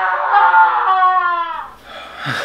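A single long horn-like note, steady and then sagging slightly in pitch before it cuts off, played as a sound effect over a round title card.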